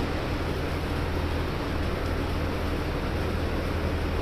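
A steady low hum under an even rushing noise, unchanging throughout, like machinery or air moving.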